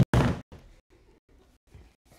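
A loud thud as a man drops onto a wooden stage floor, one crash about half a second long at the very start, followed by faint scuffling.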